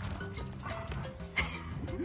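Background music with a steady low line, and a single short, sharp bark from a Great Pyrenees at play about one and a half seconds in.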